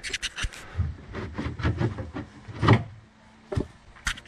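Irregular rubbing, scraping and knocks of hands-on handling around a plastic sump basin, with a louder knock about two-thirds of the way through and another near the end.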